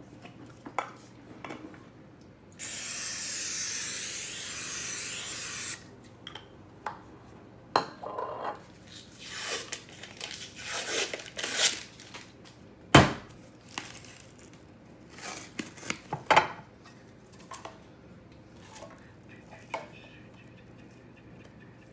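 Cooking spray hissing steadily into a glass baking dish for about three seconds. Then the paper wrapper of a tube of refrigerated biscuit dough tears and rustles as it is peeled, and about two-thirds of the way through there is one sharp loud pop as the pressurised tube bursts open, followed by lighter handling clicks.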